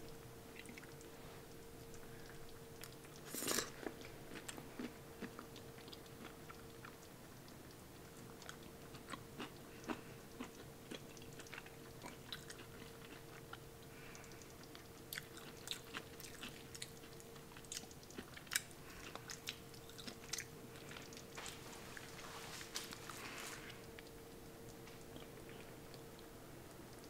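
Faint close-up chewing and mouth sounds of a person eating pumpkin chili, with many scattered soft clicks and smacks and one louder brief noise about three and a half seconds in. A faint steady hum runs underneath.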